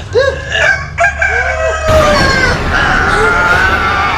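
A rooster crowing: a few short calls in the first two seconds, then one long drawn-out crow.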